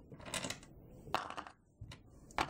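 Light clicking and clattering of small hard polymer clay charms against a clear plastic compartment organizer box as it is handled, in a couple of short bursts.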